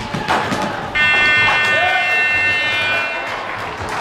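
Sports-hall scoreboard buzzer sounding one long steady tone for a bit over two seconds, starting about a second in: the end-of-match signal. Short knocks and a shout come before and under it.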